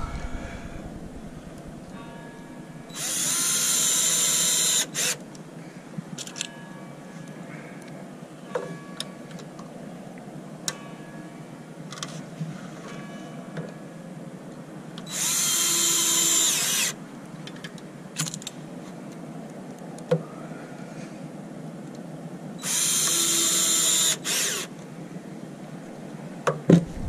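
Cordless drill-driver driving screws through metal strap brackets into a plywood form: three runs of about two seconds each, a steady whine, each followed by a short extra blip of the trigger. Light clicks and handling noise come between the runs.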